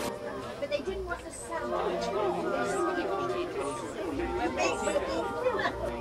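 Several people chatting at once: overlapping conversation of a small group, with no one voice standing out clearly.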